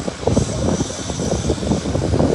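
Wind buffeting a phone's microphone: an uneven, gusty rumble.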